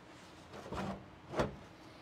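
Faint handling sounds as an interior trim panel is worked into place: a soft rub a little under a second in, then a single sharp knock about one and a half seconds in.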